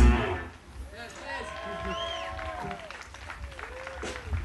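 The final cymbal crash and chord of a live rock band ring out and fade, then audience voices cheer and whoop with a little scattered clapping.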